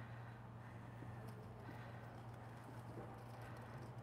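Quiet background with a steady low hum and a few faint, light clicks.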